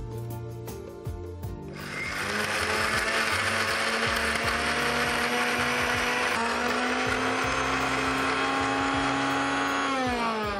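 Electric mixer grinder (mixie) grinding a wet spice paste in its steel jar. The motor starts about two seconds in and then runs steadily with a loud whirr and whine.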